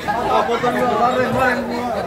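Crowd chatter: several people talking over one another.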